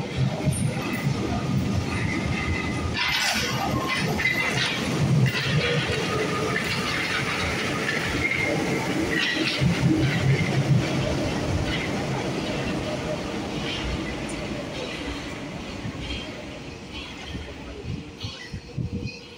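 Paris Métro MF67 train running through the station with wheel clatter on the rails. It grows loudest around ten seconds in, then fades steadily as it runs off into the tunnel.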